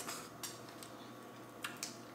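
A few faint clicks and snaps of boiled crab-leg shells being cracked and picked apart by hand, one about half a second in and two close together near the end.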